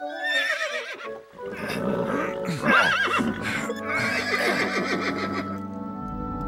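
A horse whinnying twice, a wavering call, the second louder about three seconds in, over soft background music.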